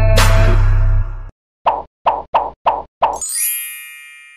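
Music ends abruptly about a second in, just after a rising whoosh. Then come five quick cartoon plop sound effects, and a bright chime that rings out and fades: an animated logo sting.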